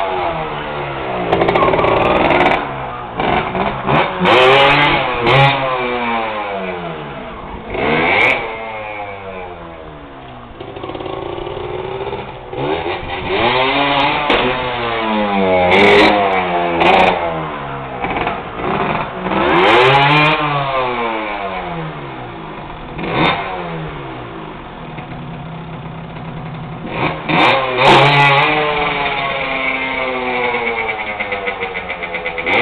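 Trials motorcycle engine being revved up and down again and again, each blip of the throttle rising and then falling in pitch, with a few sharp clicks.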